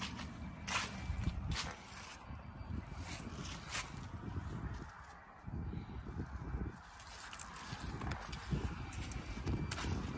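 Footsteps crunching on dry grass and fallen leaves, irregular steps about once a second, over a low, uneven rumble.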